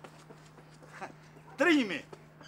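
A single loud vocal cry falling in pitch, about half a second long, near the end. Before it there are only faint ticks over a low steady hum.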